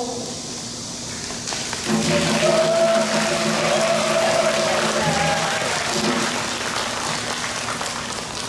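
Outdoor audience applauding, starting about a second and a half in, in answer to a call for more applause. A held, slightly wavering musical note, from an instrument or a voice, sounds over the clapping for a few seconds.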